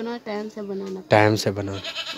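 A goat or sheep bleating, with one loud bleat about a second in that falls in pitch and lasts under a second.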